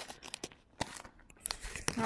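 Faint handling noise: a few scattered light knocks and clicks with some rustling of paper packaging.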